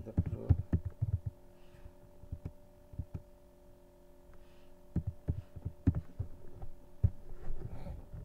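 Keystrokes on a computer keyboard: a quick run of clicks at the start and a few more scattered ones in the second half, over a steady low electrical hum.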